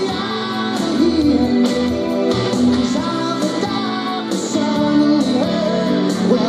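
Live rock band playing: electric guitars, keyboards and drums on a steady beat, with a male lead vocal singing over it.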